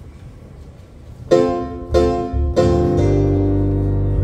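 A band's instrumental intro starts about a second in: three struck chords roughly two-thirds of a second apart, then a held chord over a low bass note.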